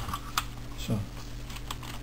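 A few light clicks and taps from the metal case of a BMW E46 stereo head unit being handled and tilted, over a steady low hum.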